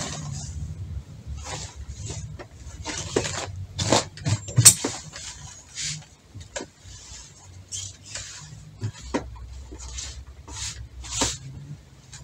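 Fabric rustling and brushing in a string of short, irregular swishes as the folded cloth is smoothed and handled by hand, over a faint steady low hum.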